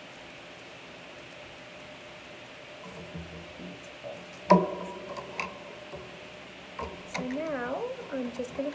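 One sharp knock about halfway through, a small hard object put down on a wooden tabletop. A voice follows near the end.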